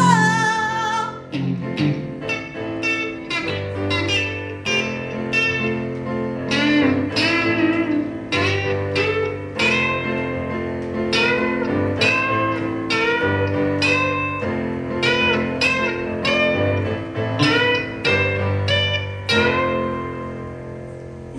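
Electric guitar playing a bluesy lead line with bent notes over sustained digital piano chords. A voice sings a held note right at the start.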